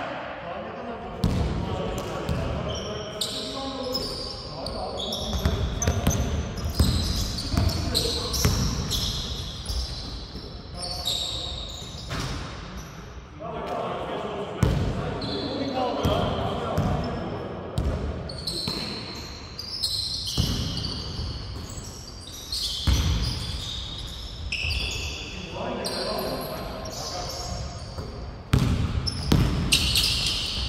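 A basketball bouncing and being dribbled on a hardwood gym floor, with many sharp thuds and sneakers squeaking in short, high-pitched chirps. Players call out and shout to each other, and it all echoes in the big hall.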